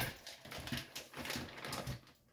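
Plastic packaging crinkling and rustling as raw ground turkey is squeezed out of it into a crock pot: a run of soft, irregular crackles.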